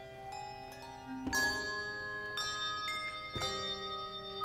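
Handbell choir ringing brass handbells: notes and chords struck one after another, each ringing on and overlapping the next, with a fuller chord about a second in.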